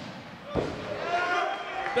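A single thud of a body hitting the wrestling ring's canvas about half a second in, followed by a faint drawn-out voice.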